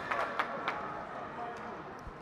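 Indoor sports hall ambience: faint background voices with a few light knocks in the first second.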